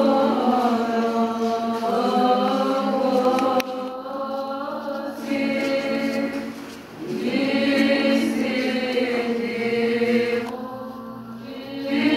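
Greek Orthodox Byzantine chant sung by several voices together over a steady held low drone, in long phrases that break off briefly about four and seven seconds in and again near the end.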